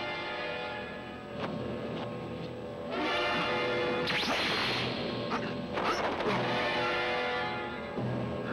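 Film soundtrack music with held tones, under dubbed action sound effects: a loud swishing rush from about three to five seconds in, and sharp hits a little later, near five and six seconds.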